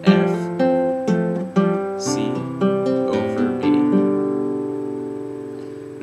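Acoustic guitar fingerpicked in open position, single notes plucked about two a second. After about three and a half seconds the last chord is left to ring and slowly fades.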